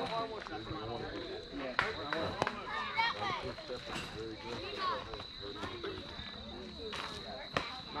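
Distant voices of players and spectators talking and calling across a baseball field, with a few sharp knocks or claps: two about two seconds in, and two more near the end.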